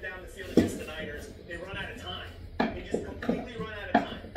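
Indistinct speech playing from a device, with a few sharp knocks on the wooden stairs: the loudest about half a second in, more near the end.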